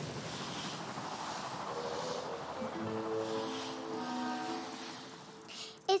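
A fading rush of noise, the tail of a cartoon explosion, dies away slowly. About two seconds in, soft sustained music notes enter, then fade out near the end.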